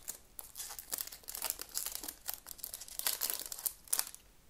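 The foil wrapper of a 2020 Topps Gallery trading-card pack crinkling as it is torn open and handled by hand, in quick irregular crackles.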